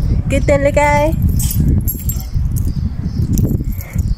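Steady wind rumble on a phone microphone, with keys jangling in a hand and a short voice sound about half a second in.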